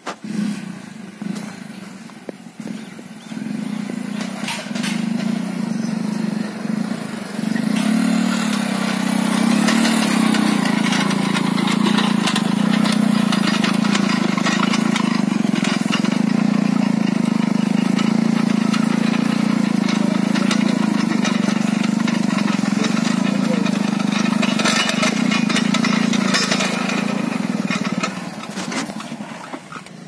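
Engine of a small farm machine running steadily under load as it pulls a ridging implement through the soil, getting louder about a quarter of the way in and easing off near the end.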